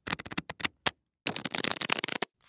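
A deck of tarot cards being shuffled: rapid runs of crisp card clicks, broken by a sudden dead-silent gap about a second in before the shuffling resumes.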